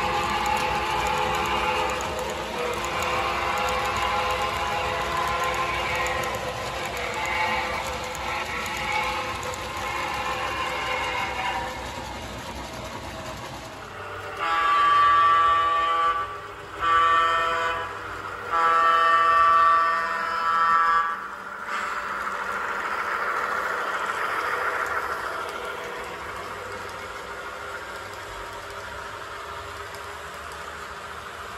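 HO scale model trains running, with steady rolling and motor noise, and about halfway through a train horn blows four blasts, long, short, long, short, over about seven seconds.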